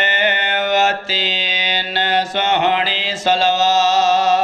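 A man's voice chanting a drawn-out melodic recitation through a microphone, holding long notes with a wavering pitch and pausing briefly for breath about a second in and twice more later on.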